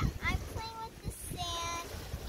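A young girl's high voice singing a few notes, sliding in pitch and then holding one note near the end, with wind rumble on the microphone.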